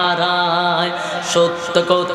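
A man singing a Bengali Islamic gojol (devotional song), holding one long wavering note for about a second and a half, then moving through a few shorter notes near the end.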